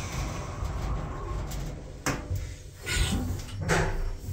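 Kone lift car's stainless-steel sliding doors running shut with a low rumble, meeting with a thump about two seconds in. Further brief knocks follow near the end.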